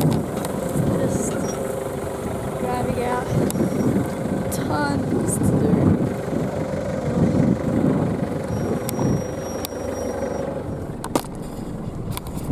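A loaded truck's engine running steadily, with a steady hum that stops near the end. Brief faint voices are heard in the background.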